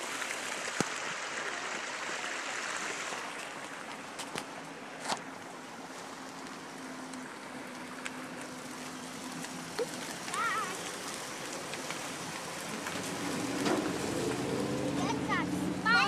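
Creek water running over rocks, a soft steady rush that eases after about three seconds. A brief high chirp comes about ten seconds in, and voices come in near the end.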